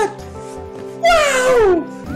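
A man's high, drawn-out exclamation falling steeply in pitch, starting about a second in and lasting under a second, over background music.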